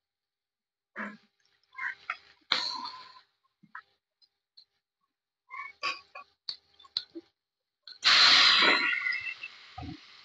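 Corn tortillas being laid on a hot oiled griddle: scattered light clicks and taps of handling, then a loud sizzle about eight seconds in that fades over a second or two.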